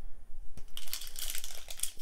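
Foil Pokémon card booster pack crinkling as it is handled and torn open, a dense run of crackles starting just under a second in.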